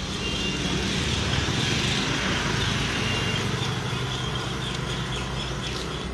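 A road vehicle with its engine running passes close by. It swells to its loudest about two seconds in and then slowly fades, over steady traffic noise.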